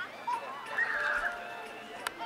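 A horse whinnies once, briefly, about a second in.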